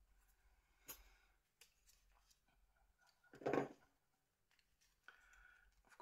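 Mostly near silence, with a faint click about a second in and one short, louder scrape about three and a half seconds in. These are small plastic parts of a Nokia N80 body shell being handled and pried loose.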